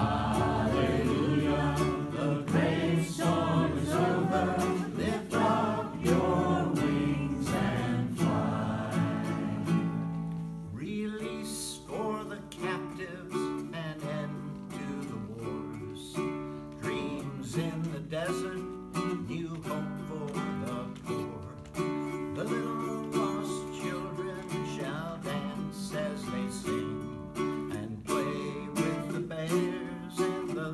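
A folk spiritual played on a strummed ukulele, with singing for roughly the first ten seconds. After that the ukulele carries on alone and more quietly, strumming steady chords.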